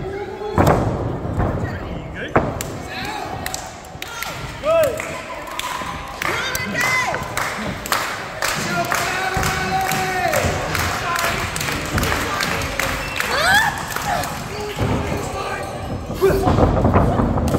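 Pro wrestling in the ring: sharp strikes and thuds of bodies on the ring, with a loud hit about half a second in and another a couple of seconds later, and people shouting and whooping between the blows.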